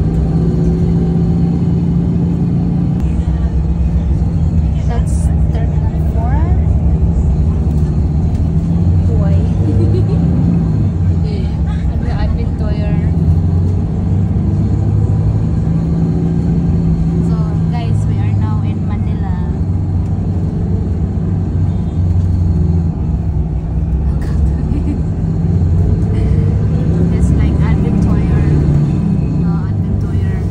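Steady low rumble of a road vehicle's engine and road noise, heard from inside the cabin while it drives. Voices talk in the background now and then.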